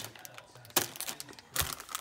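Plastic food packaging crinkling as it is handled, with two short crackles, one a little under a second in and another with a soft thud near the end.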